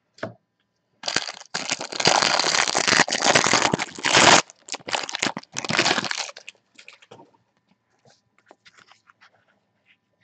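Cellophane wrapping crinkling and tearing as trading card packs are opened by hand. A dense run of crackling lasts from about a second in to about four and a half seconds, followed by a few shorter bursts until about six seconds. After that come only faint light ticks as the cards are handled.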